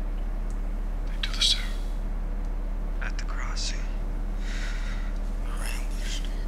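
A few short whispered phrases over a steady low hum.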